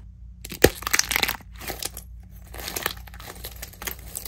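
A hardened plaster shell around a squishy toy being squeezed and cracked by hand. One sharp crack comes about half a second in, then a run of small crackles and crunches as the shell breaks up.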